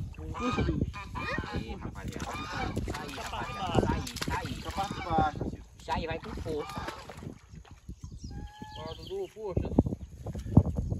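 Geese honking in a repeated run of short calls, mixed with people's voices. Near the end come a few longer calls held on one pitch.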